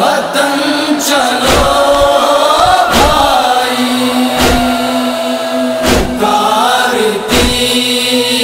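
A noha, an Urdu Shia lament, sung by a male reciter with backing voices, in slow melismatic lines with one long held note in the middle. A deep beat sounds about every second and a half under the singing.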